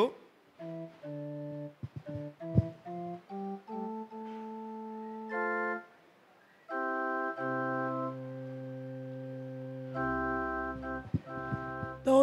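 Organ playing a short run of single notes, then long held chords over a deep bass note, with a brief break about six seconds in. A single sharp knock sounds about two and a half seconds in.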